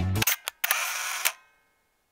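Camera shutter sound effect: two sharp clicks, then a short burst of mechanical shutter and winding noise that dies away.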